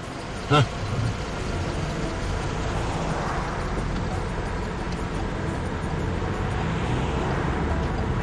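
Steady road and engine rumble heard from inside a moving car's cabin, with a brief swell a few seconds in.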